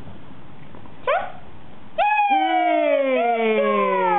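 A small dog gives a short rising yip about a second in, then from about two seconds a long drawn-out howling whine that slowly falls in pitch and carries on past the end.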